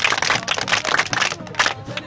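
A quick, dense run of sharp clicks that stops about a second and a half in.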